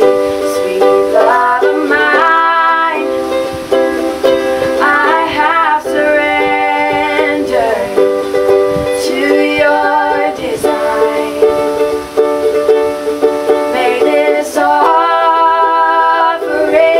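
Ukulele playing chords while two women sing over it.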